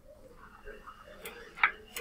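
Sharp clicks or taps over low room noise: one loud click about a second and a half in, and another near the end.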